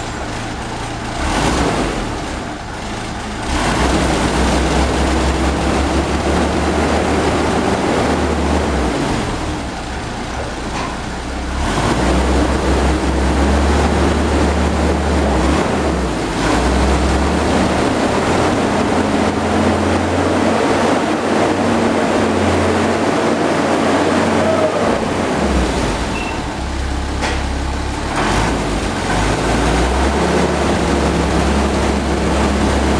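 The Hercules JXD straight-six petrol engine of a 1943 M8 Greyhound armoured car, freshly rebuilt after seizing, running and being revved in long stretches. It briefly drops back toward idle twice, then is held up again.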